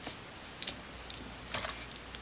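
A few small clicks and taps of a Hot Wheels die-cast Mack U-600 toy truck and its trailer being handled as the trailer is lifted off the tractor's coupling, with a small cluster of clicks about a second and a half in.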